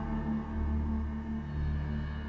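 Background music score: sustained held tones over a steady low drone.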